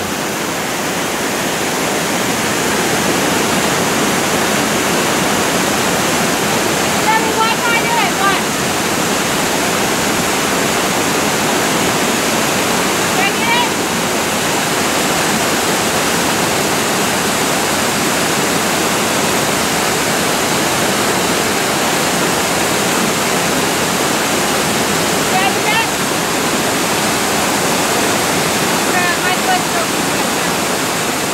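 A creek waterfall cascading over granite ledges and boulders: a loud, steady rush of falling water.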